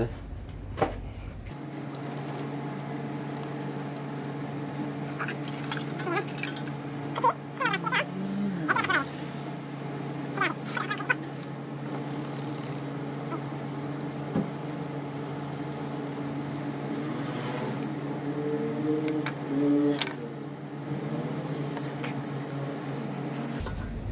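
A steady electrical hum, with scattered clicks and knocks of the plastic electrolyte pack and the charger clamps being handled on a new motorcycle battery. A few short, quiet voice sounds come up around the middle and near the end.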